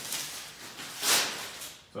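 Plastic shrink-wrap packaging crinkling as it is handled and tossed aside, with one louder rustle about a second in.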